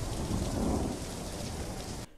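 Steady rain with a low rumble of thunder in a film's soundtrack.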